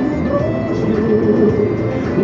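Music from a car radio, heard inside the moving car with a steady low rumble underneath.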